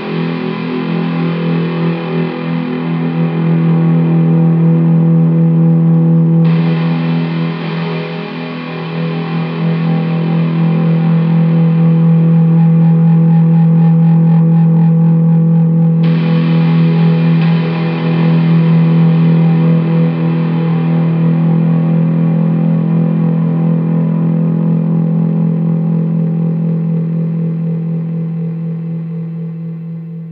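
Doom/stoner metal: a slow, sustained drone of distorted electric guitar through effects. It brightens suddenly twice as fresh chords come in, then fades out near the end.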